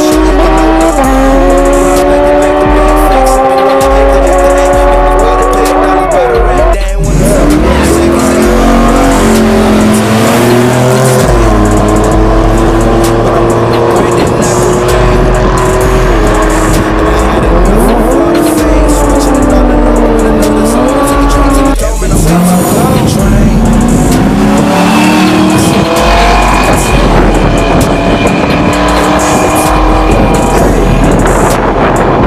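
Drag-racing engines at full throttle down the strip, their pitch climbing and stepping as they shift gears, over a hip-hop track with heavy bass. Sport motorcycles first, then cars after an abrupt cut about seven seconds in.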